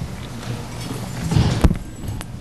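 Footsteps on a hard floor and a knock, most of it about a second and a half in, ending in one sharp click, over a low room hum.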